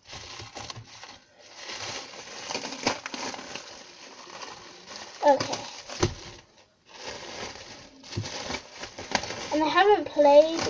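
Thin plastic bag crinkling and rustling as slime is handled and pulled out of it, with many small crackles.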